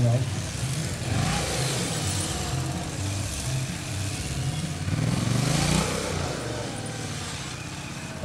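Motorcycle engine revving up and down in short bursts as the bike is ridden through tight turns, with a longer climb in revs about five seconds in, then easing off near the end.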